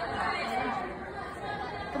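Indistinct background chatter of several people talking in a large, echoing gym hall. A shout starts right at the end.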